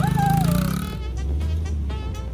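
Small engine of a children's mini dirt bike running with a rapid, even pulse for about the first second, with a child's voice over it. After that, a steady deep bass note of background music takes over.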